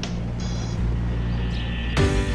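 Low, sustained drone of background dramatic music with no speech, and a brief faint high shimmer about half a second in.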